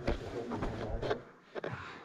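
Footsteps and scrambling over loose chalk rubble: a few short crunches and scrapes, roughly one a second.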